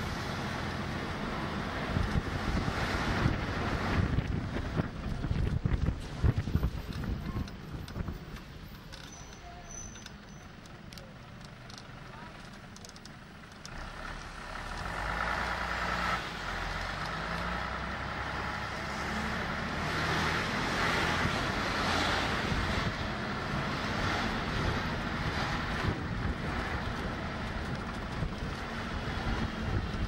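Open-top bus running along the road, its engine a steady low rumble heard from the open top deck, with wind buffeting the microphone. It goes quieter for a few seconds in the middle, then louder and steadier again.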